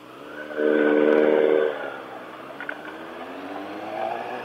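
Sport motorcycle engine pulling away: the revs climb and hold for about a second, ease off, then climb steadily again near the end as the bike gathers speed.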